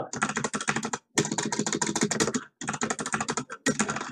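Fast typing on a computer keyboard: rapid keystrokes in three runs, with short pauses about a second in and again past halfway.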